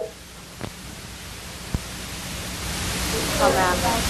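Steady hiss of room noise on the microphone, growing louder toward the end, with a single short click before the middle and a faint voice about three seconds in.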